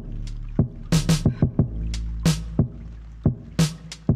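Lo-fi hip hop instrumental: a slow, laid-back drum beat, with a sharp hit about every second and a third and lighter hits between, over a sustained low bass line.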